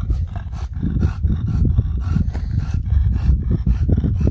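A French bulldog panting quickly and close, about four breaths a second, over a low rumble.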